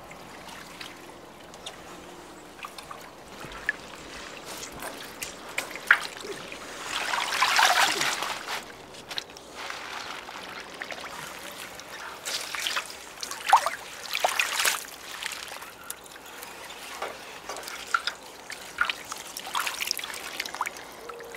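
Water splashing and trickling as salad leaves are stirred and mixed by hand in a plastic barrel of water, with scattered small splashes and a louder rush of water about seven seconds in.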